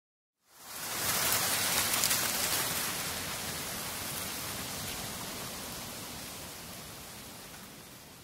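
A steady, rain-like hiss of noise that fades in about half a second in, then slowly fades down toward the end.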